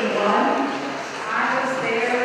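Congregation singing a hymn together, many voices holding long sustained notes that move from one pitch to the next.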